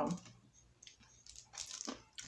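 Faint crunching of hard rock candy being chewed, a few soft cracks about a second in and a cluster near the end.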